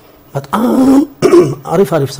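A man clears his throat with a short rough rasp about half a second in, then goes on speaking.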